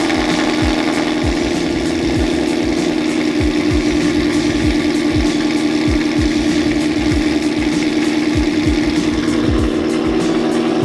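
A 2015 Ford Mustang GT's 5.0 L V8 idling steadily just after a cold start, the car having sat for about five days.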